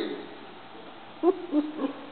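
About a second of room quiet, then a person's voice making a few short, low wordless sounds, like an 'mm' or 'ooh'.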